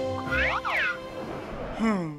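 Cartoon background music with comic sound effects: a quick rising-and-falling pitch glide about half a second in, and a falling glide near the end.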